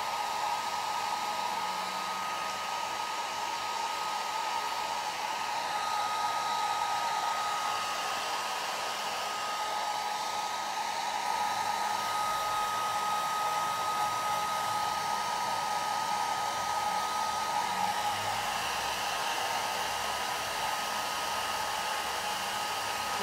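Hand-held hair dryer running steadily, blowing air close over freshly painted plaster to dry it: an even rush of air with a steady whine from the motor.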